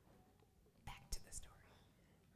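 Near silence in a pause of a speech: room tone with a few faint breathy hisses about a second in, like a breath or a whispered sound at the lectern microphone.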